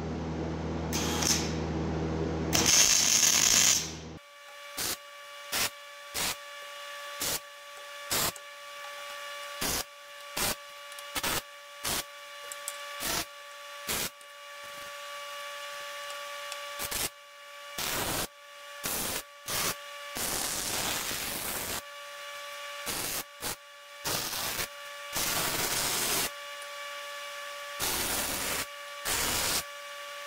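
MIG welder arc on mild steel: a run of short crackling weld bursts, mostly brief tacks with a few lasting a second or two, over a steady hum and a steady tone.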